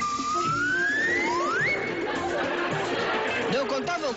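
Opening theme music of a comedy show: two rising whistle-like glides, the second climbing fast and holding briefly at the top, then busier music with voice-like chatter over it.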